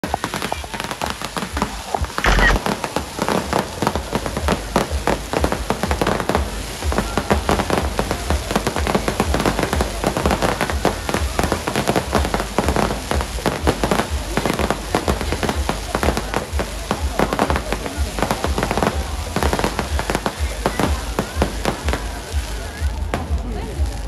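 Fireworks display: a dense, unbroken run of crackles and bangs from exploding aerial shells, with an especially loud bang about two seconds in.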